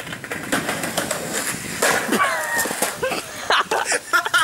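Skateboard clattering on pavement: a rapid run of sharp clacks and knocks from the wheels and board, with voices calling out among it.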